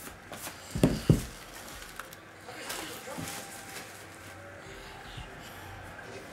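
Two low, soft thumps about a second in, a fraction of a second apart, from card packaging being handled and set against the table, followed by faint room background.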